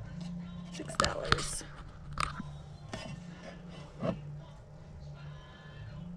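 Ceramic nursery planter being picked up and turned over on a shelf: a few sharp knocks and clinks of glazed ceramic, the loudest pair about a second in, over a steady low hum.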